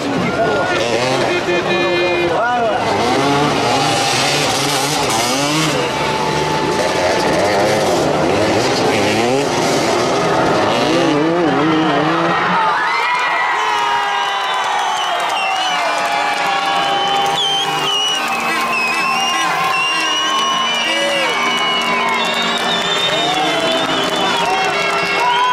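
Several motoball motorcycles' engines revving in a close scrum, the pitches rising and falling against each other, with crowd voices behind. About halfway through the deep engine sound thins out, leaving higher wavering tones.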